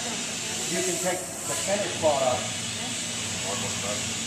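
Lampworking bench torch burning with a steady hiss while a glass rod is held in its flame, with faint voices underneath.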